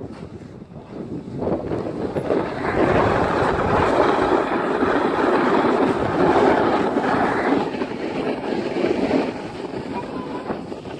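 Snowboard sliding and scraping over packed snow, a steady rushing hiss that builds over the first few seconds and eases near the end, mixed with wind on the microphone.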